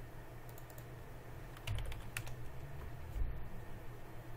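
Computer keyboard being typed on in short clusters of key presses, about half a second in, again about two seconds in and once more near the three-second mark, over a low steady hum.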